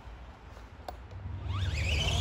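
Electric motor of an Arrma Granite 4x4 radio-controlled monster truck whining, rising in pitch as the truck speeds off in the last half second, after a single click about a second in.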